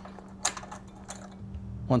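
A few light clicks of small metal hardware being handled as a nut and washer are fitted onto a bolt in an aluminium solar-panel Z bracket, over a faint steady hum.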